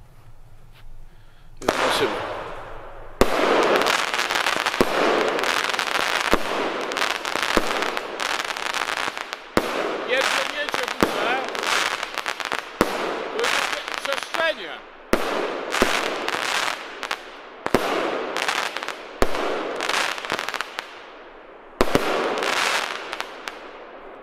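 A 13-shot, 25 mm consumer firework cake firing: a sharp bang about every half second to second, over continuous hissing and crackling from the bursts. The shots start about two seconds in and stop about two seconds before the end.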